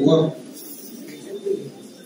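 A man's brief spoken word at the start, then a bird cooing faintly in the background.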